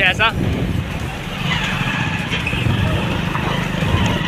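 Motorcycle engine running steadily with wind and road noise while riding, heard from the bike itself as a low, even rumble.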